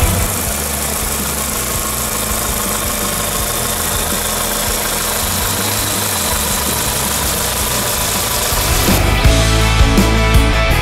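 Volkswagen Vento's 1.6-litre four-cylinder petrol engine idling steadily, heard from the open engine bay.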